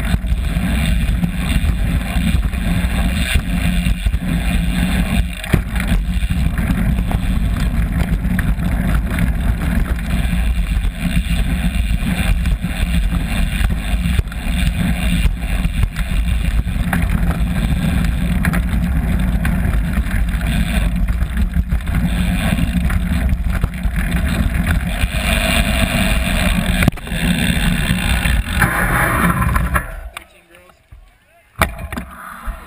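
Wind buffeting a bike-mounted GoPro, mixed with the rumble and rattle of a BMX bike rolling fast over a dirt track, steady with irregular bumps throughout.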